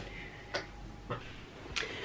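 Three soft, sharp clicks about half a second apart over quiet room tone.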